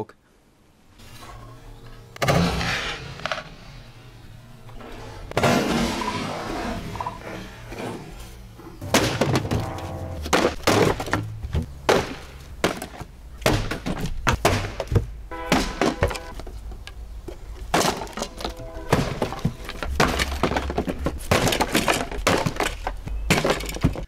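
Wooden speaker cabinets being smashed apart: repeated heavy blows with cracking and breaking, densest in the second half, over background music.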